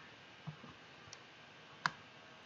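Computer mouse clicks: a few faint clicks, then one sharper click near the end.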